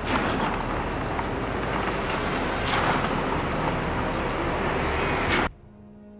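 Steady rushing vehicle noise with a couple of sharp clicks, cutting off suddenly about five and a half seconds in. Faint music with held tones follows near the end.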